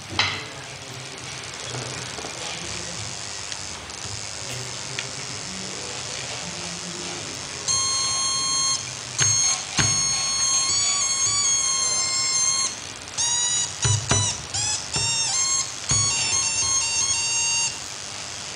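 Electronic tones from a small speaker mounted on a pencil, starting about eight seconds in and sounding in short on-off stretches, the pitch shifting a little from one stretch to the next. The tones come as hands touch the drawn graphite line, which closes the pencil's low-current circuit.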